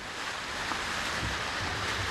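Outdoor fountain jets splashing into their basin: a steady rush of falling water.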